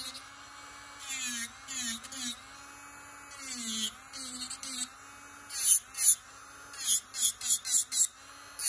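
Sunnail electric nail drill, turned up high, whining steadily. Its pitch dips briefly each time the bit is pressed onto the nail. The bit files gel polish off in scratchy grinding bursts, which come thicker and louder in the last couple of seconds.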